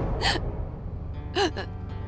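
A young woman crying, with two short gasping sobs, one just after the start and one about a second and a half in, over soft background music.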